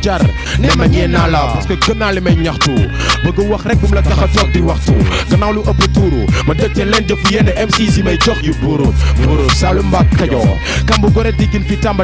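Hip hop diss track: rapping over a beat with deep, held bass notes.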